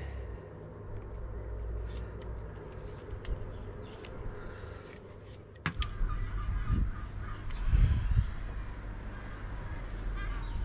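Light handling noises, scattered small clicks and knocks of plastic water-pipe fittings being worked by hand, over a low steady rumble. A sharp click comes a little past the middle.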